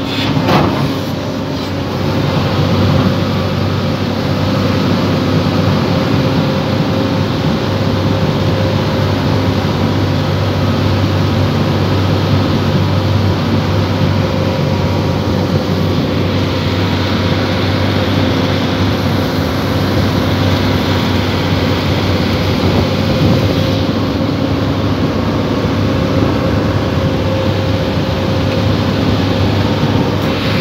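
Hydraulic excavator's diesel engine running steadily, heard from inside the operator's cab while the machine works its boom and bucket. There is a short knock just after the start.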